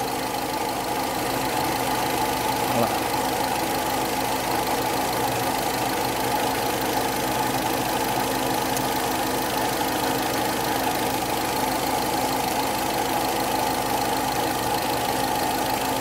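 Volkswagen Saveiro Cross engine idling steadily with a misfire. The cause is the number 2 spark plug wire leaking current (flash-over).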